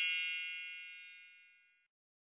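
A bright, bell-like chime sound effect ringing out and fading away, dying out about a second and a half in.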